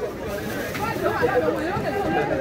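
Several voices talking over one another: the general chatter of a busy market.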